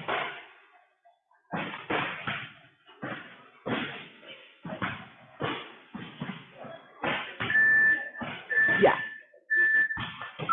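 A gym interval timer beeping three times, about a second apart, near the end, counting down the end of a work interval. Under it, a run of loud, echoing thumps recurs throughout.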